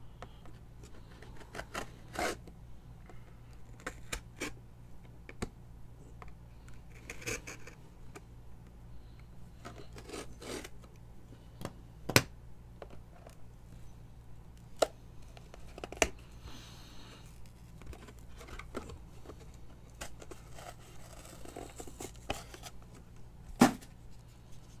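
Hands handling and tearing cardboard packaging to remove its UPC barcode: a scattered run of scrapes, rustles and sharp clicks, with a few louder clicks about halfway, about two-thirds through and just before the end.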